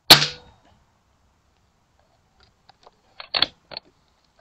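Air rifle shot: one sharp crack that dies away within half a second. About two and a half seconds later comes a quick run of clicks and knocks, loudest about three and a half seconds in.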